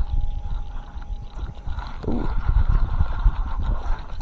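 Wind buffeting the microphone in a low, uneven rumble, with a brief "ooh" from a person about two seconds in.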